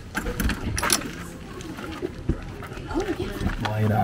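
Voices talking in the background, with a few light clicks and knocks as the homebuilt wooden camper's side door is unlatched and opened.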